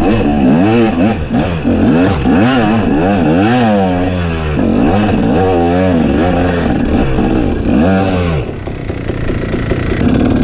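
KTM SX250 two-stroke dirt bike engine, heard from on board, revving up and down over and over as the throttle is worked on a rough trail. The revs fall away for about a second near the end before picking up again.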